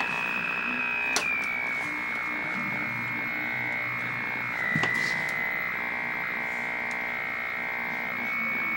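A steady, buzzy electronic test tone from a tube colour television's speaker, fed by an NTSC pattern generator. A sharp click about a second in and another just before the fifth second each drop the tone a step in pitch.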